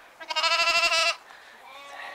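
A Romanov lamb bleating: one loud, high, wavering bleat of about a second, followed by a fainter second bleat near the end.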